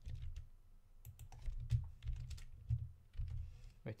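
Computer keyboard typing: a handful of irregular keystrokes, with a low rumble underneath.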